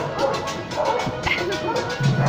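Vallenato music from a street band thins to a short break with the bass dropped out, and a dog barks a few times over it.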